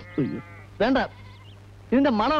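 Faint goat bleating, a wavering call in the first half second, with a short voice sound about a second in.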